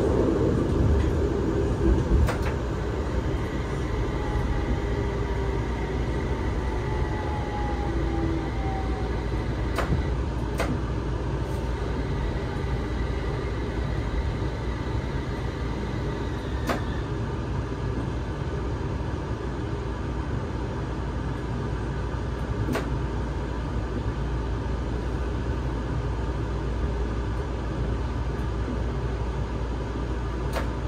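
Cabin sound of an electric light-rail tram running: a steady low rumble with thin electric whining tones, one of which glides down in pitch, and a few short clicks.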